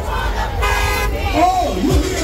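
A short horn toot, under half a second long, about half a second in, over crowd voices and the low, regular beat of loud music.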